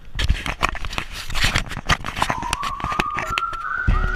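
Car driving on a rough, broken dirt road, heard from a camera mounted on the outside of the body: low road rumble with dense irregular rattles and knocks. About halfway through, a thin whistled tone comes in and slowly rises in pitch.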